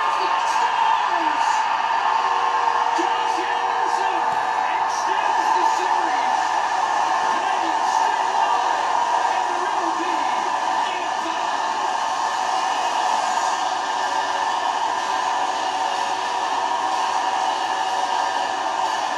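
Hockey arena crowd roaring and cheering after the home team's winning goal, with scattered shouts in the first half that thin out later. Heard through a TV speaker.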